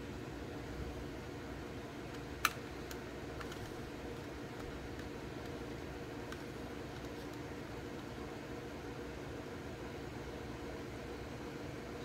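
Steady low mechanical hum of room noise, like a fan running, with one sharp click about two and a half seconds in and a few faint ticks after it.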